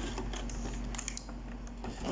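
Clear plastic blister container being handled against its cardboard box, giving a few light, irregular clicks and crackles.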